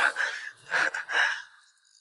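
Soft, breathy vocal sounds from a person: two short puffs of breath or whispered syllables, about a second in.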